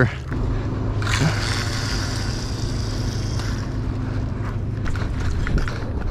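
A steady low machine hum runs throughout. About a second in, a hissing whir joins it and fades out after a couple of seconds.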